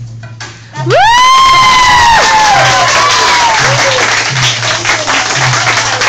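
Classroom of children bursting into cheering, high whoops and screams, and clapping, starting suddenly about a second in and carrying on loudly. The song's backing beat continues underneath.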